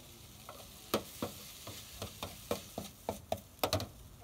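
Stir-frying noodles in a wok: a metal spatula strikes and scrapes the pan about a dozen times in quick, irregular strokes, over a steady sizzle.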